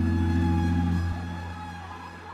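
Amapiano DJ mix music: a held deep bass note with a chord above it that fades out about a second in, leaving quieter sustained high tones.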